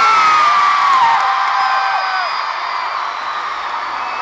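A large arena crowd of fans screaming and cheering, mostly high-pitched held screams. It is loudest at first and slowly dies down.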